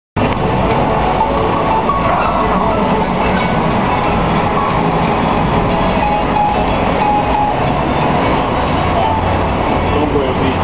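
Loud, steady city street noise with a low rumble throughout.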